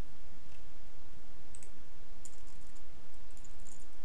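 Computer keyboard keys clicking in scattered short runs of faint ticks as code is typed, over a steady low hum.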